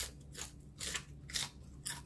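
A raw candy cane sweet pepper being bitten and chewed, with about five crisp crunches roughly half a second apart.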